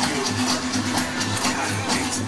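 Loud fairground ride music with a fast steady beat, played over the spinning Twist ride's sound system.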